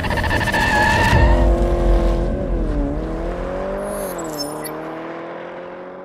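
Car sound effects: a tyre squeal for about the first second, then an engine note whose pitch dips and recovers a few times as it fades out.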